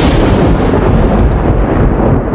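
A loud, deep boom-type rumble sound effect. Its hissy top dies away over the two seconds while the low rumble holds.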